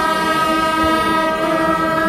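Wind instruments of a Kerala temple festival ensemble holding one long, steady note together, over crowd noise.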